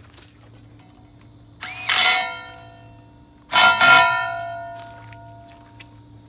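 Steel forklift wheel rim clanging twice as it is knocked, about two seconds in and again after three and a half seconds. The second is a double strike that rings on with a bell-like tone for over a second.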